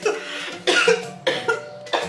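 A woman coughing in short bursts, about four times, her hand over her mouth, reacting to a foul-tasting candy.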